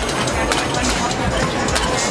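Mallets striking a Whac-A-Mole arcade game, a handful of irregular sharp knocks over steady crowd chatter.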